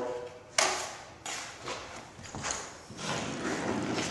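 Drywall knife scraping thin joint compound across the paper back of a drywall sheet in a few short strokes, each starting sharply and trailing off. The coat is kept thin so the water from the mud soaks in and softens the sheet for bending.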